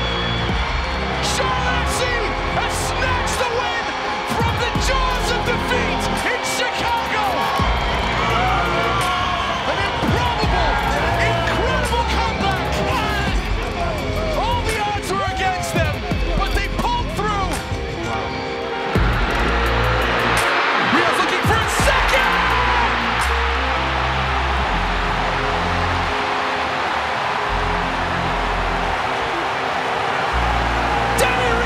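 Background music with a steady beat over excited shouting voices and crowd noise; about 19 seconds in, a louder crowd cheer swells in and holds.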